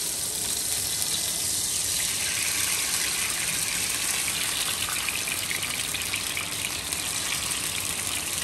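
Oil sizzling in a hot frying pan around cherry tomatoes. About two seconds in, marinated artichoke hearts and their liquid are poured in from a jar, and the sizzle grows louder and more crackly.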